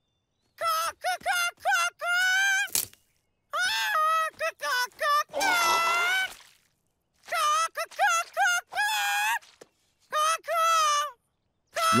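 A high cartoon voice making a string of short chirping bird calls, with a longer wavering call about halfway through.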